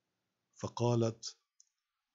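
A voice reading aloud speaks one short phrase about half a second in, followed by a single faint click.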